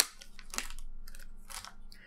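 Small clear plastic zip bag of wires and heat shrink crinkling as it is handled, a sharp click at the start followed by a few faint, short crackles.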